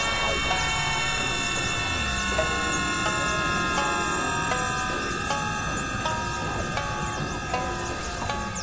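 Dense, noisy layered electronic music, several tracks sounding at once: many held tones, short stepping notes in the middle, and quick falling swoops high up.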